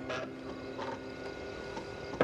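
Fax machine printing an incoming page and feeding the paper out, a mechanical whirr with a couple of short scraping sounds.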